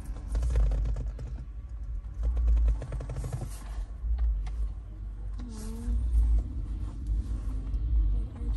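A low, uneven rumble with rustling and a quick run of small clicks as a cushion is handled against a leather car seat.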